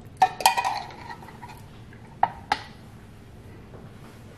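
Metal spoon clinking against a tin can while scraping canned table cream (media crema) into a pot: two ringing clinks near the start, then two sharper taps about two seconds in.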